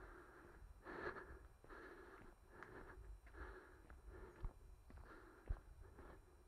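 Faint, regular breathing of a person close to the microphone, winded from running, with a couple of soft knocks in the second half.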